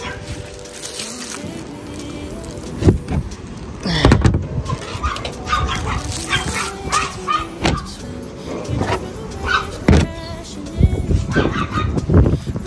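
Background music with a dog barking a few times over it.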